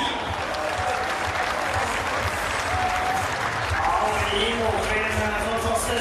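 Stadium crowd applauding, with a public-address announcer's voice coming in over the applause in the second half.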